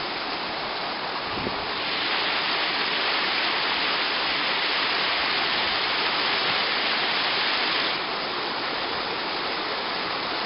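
A small waterfall pouring into a rock pool: a steady rush of falling water that grows louder about two seconds in and drops back about eight seconds in.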